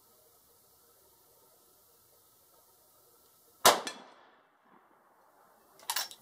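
A single gunshot from a Rossi R92 lever-action carbine in .44 Magnum, about two-thirds of the way in: one sharp, loud crack with a tail that dies away within a second.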